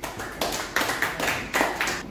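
A small audience clapping: a short, ragged round of applause that stops near the end.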